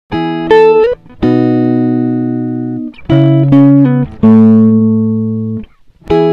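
Background music: guitar chords held for about a second each, changing several times, with a few notes sliding up in pitch.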